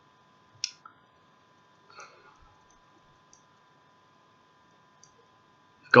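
A few faint, scattered clicks, about five in six seconds, over a faint steady electronic hum.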